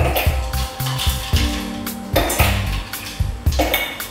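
Ice cubes clinking into and against a stainless steel mixer-grinder jar, a few sharp clinks and rattles, over background music with a steady beat.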